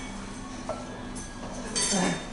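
Metal plates on heavy dumbbells clinking as they are swung up and down in front raises, with a loud ringing clank near the end, over a steady low hum.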